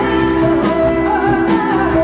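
Live pop-rock band playing: a woman singing over electric guitar, bass guitar and electric piano, with a steady beat.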